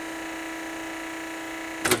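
Hydraulic pump unit of a 20-ton Wabash heated platen press running with a steady hum, one low tone under several fainter higher ones, while the palm buttons are held and the lower platen is driven up.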